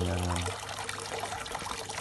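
Steady trickle of water running into a fish-rearing bucket.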